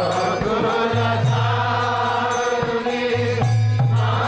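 Kirtan: devotional chanting of a Krishna mantra, long held sung notes over a steady low drone that shifts between notes.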